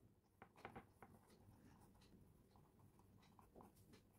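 Faint scratching of a pen writing on paper: a few short strokes in the first second and one more near the end, over near silence.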